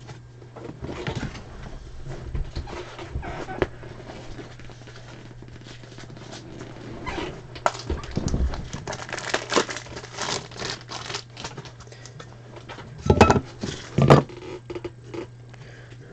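Trading cards being handled by gloved hands: short rustles, slides and light clicks of card stock, with two louder knocks about a second apart near the end, over a low steady hum.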